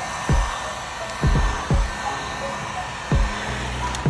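Handheld heat gun blowing hot air onto vinyl wrap film, a steady rushing hiss. Background music with a regular drum beat plays over it.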